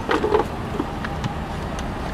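Steady low rumble of an idling vehicle engine, with a short burst of voice in the first half-second.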